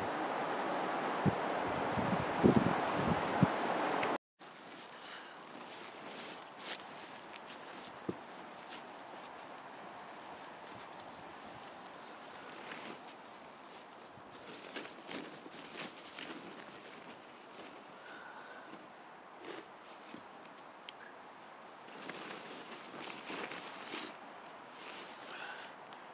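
A steady rushing noise with a few thumps for about four seconds, then, after an abrupt cut, quiet forest ambience with scattered rustles and crunches of dry leaves and tarp fabric as a man crawls into a low tarp shelter pitched on a leaf-covered floor.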